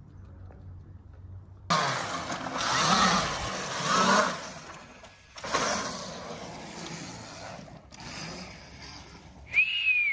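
Dirt bike ridden in a concrete skatepark bowl, its engine suddenly coming in loud and rising and falling through two revs, then breaking off and running on more evenly. A short high falling squeal comes near the end.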